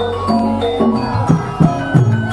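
Javanese gamelan music accompanying a lengger dance: bronze metallophones ring out a steady run of struck notes over kendang drum strokes.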